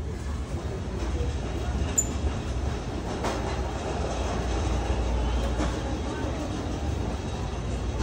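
Big-box store background noise: a steady low rumble with faint distant voices, and a brief sharp click about two seconds in.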